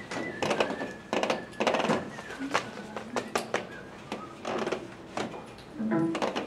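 Classroom handling noise: scattered clicks, knocks and rustles, with low murmured voices. A faint thin whistle-like tone sounds through the first couple of seconds.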